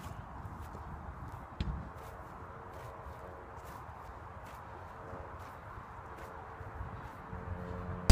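Faint light footsteps and soft touches of a football on grass over a low steady rumble, with one louder thump about a second and a half in.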